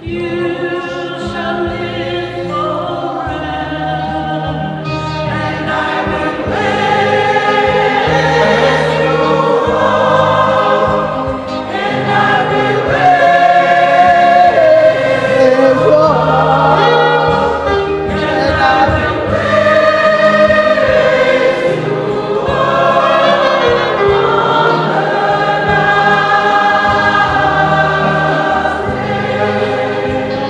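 Church choir singing a hymn over steady instrumental accompaniment, growing fuller and louder partway through.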